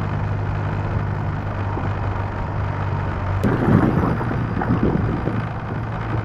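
BMW motorcycle engine droning steadily at freeway speed, mixed with wind and road rumble on a helmet-mounted microphone. The rumble swells briefly about three and a half seconds in.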